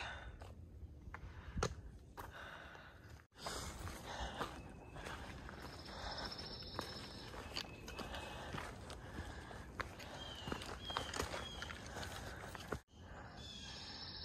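A hiker's footsteps on a dirt and rock trail, faint and uneven. Three short high chirps come about ten to eleven seconds in.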